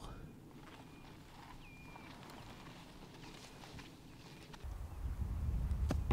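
Faint open-air ambience with a few short, high bird calls, one of them a quick upward-hooked whistle. From about three-quarters of the way through, wind rumbles on the microphone.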